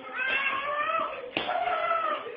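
A man's long, high pained wails as he is beaten with a stick, two drawn-out cries with a sharp blow landing between them about one and a half seconds in.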